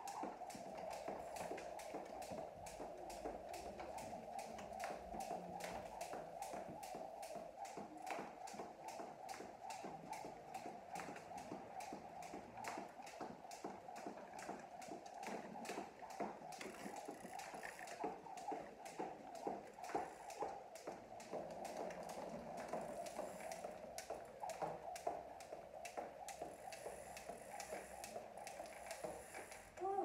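Jump rope skipping on a concrete floor: the rope slapping the ground and the feet landing in a fast, even rhythm, stopping right at the end.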